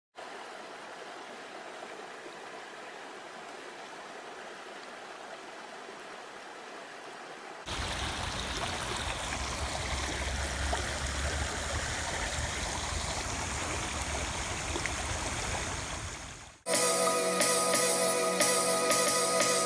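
Stream water rushing over rocks, a steady even rush. About eight seconds in it cuts to a louder, deeper rush of churning water. Near the end the water fades out and music begins.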